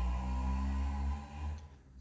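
A low, steady droning hum with several held tones, louder than the speech around it, fading out about a second and a half in.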